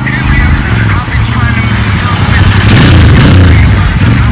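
Motorcycle engine, a Royal Enfield 650 parallel twin, riding past close by. Its sound swells and is loudest about three seconds in. A song with singing plays over it.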